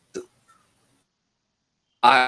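Mostly silence on a video-call audio feed, broken by one brief sharp sound about a fifth of a second in.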